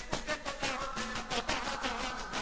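Embolada music: a pandeiro's jingles struck and shaken in a fast, even beat of about five or six strokes a second.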